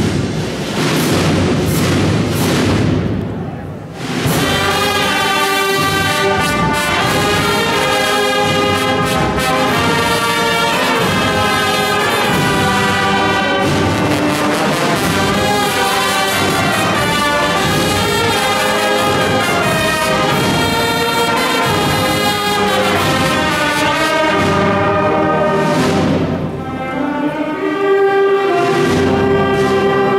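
Brass band of trumpets, saxophones and sousaphones playing a march in sustained chords, entering about four seconds in after a few seconds of dense rattling noise; a second noisy passage comes shortly before the end.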